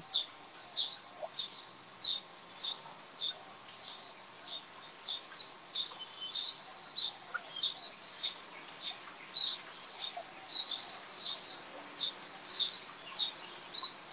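A small bird chirping over and over, short high chirps at about two a second, evenly spaced.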